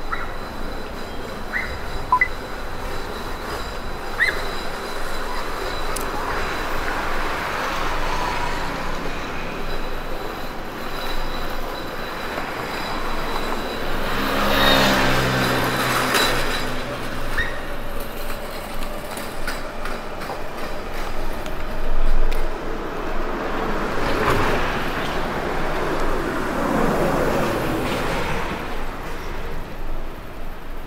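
City street traffic: motor vehicles passing one after another. The loudest passes about halfway through with a low engine hum, and another passes near the end with a falling pitch.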